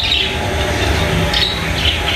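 Bird chirps, a few short ones spread over two seconds, over a steady low rumble.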